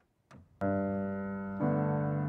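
Grand piano beginning a song's introduction: a chord struck about half a second in and held, then a second, fuller chord about a second later, ringing on.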